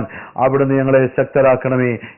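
A man speaking in a steady monologue, with a brief pause just after the start.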